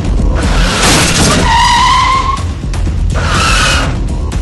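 Film-trailer soundtrack: loud music with a heavy low end, overlaid with tyre-screech sound effects, a long squeal about halfway through and a shorter one near the end.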